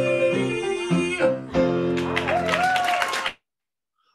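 Piano and a man's singing voice at the close of a comic patter song, ending on a held, wavering note. The sound cuts off abruptly a little over three seconds in.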